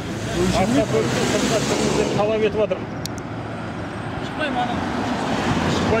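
Road traffic noise, with a vehicle passing close by for the first two seconds, under people talking.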